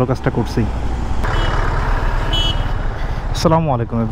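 Yamaha motorcycle engine running as the bike rides along, a steady low rumble with wind and road noise on the helmet-level camera that grows louder about a second in. A short high beep sounds briefly near the middle.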